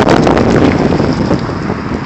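Wind buffeting the phone's microphone: a loud, rumbling rush of noise that gradually eases toward the end.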